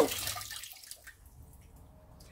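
Water running from a kitchen faucet into the sink, fading out and stopping about a second in, with quiet afterwards.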